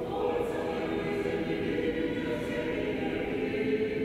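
Orthodox church choir singing unaccompanied liturgical chant in slow, sustained chords.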